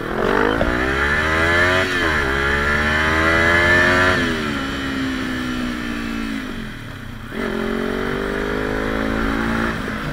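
Sport motorcycle engine accelerating, its pitch climbing through an upshift about two seconds in. The revs then fall away from about four seconds as the throttle closes, and the engine picks up again a little after seven seconds.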